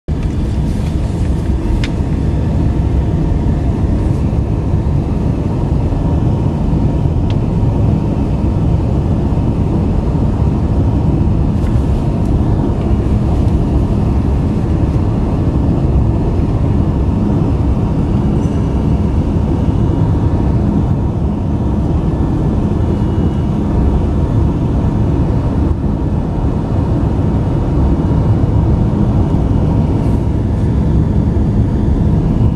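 Steady road and engine noise of a car driving on a paved highway, heard from inside the cabin: mostly a low, even rumble.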